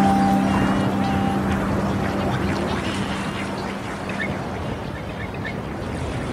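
The last held notes of a song fade out within the first second or two, leaving a steady wash of sea and surf that slowly grows quieter. A few short, high bird calls come through near the middle and toward the end.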